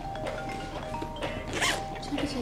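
A bag's zipper pulled once, quickly, about one and a half seconds in, over soft background music with held notes.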